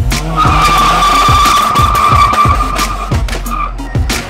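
Car tyres squealing for about three seconds as a Mitsubishi Colt CZT pulls away hard, with wheelspin, over electronic music with a steady beat.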